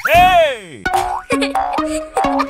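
Cartoon bounce sound effect: a springy pitched sweep that rises and falls, sounding twice in quick succession. About a second in, it gives way to children's music with a steady beat.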